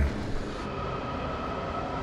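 Washington Metro subway train running: a steady rumble with a faint, steady high whine.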